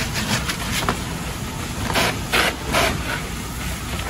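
Hose stream of water spraying onto a burning RV wreck over the steady low running of the fire engine's pump, with three short, louder rushes of noise about two to three seconds in.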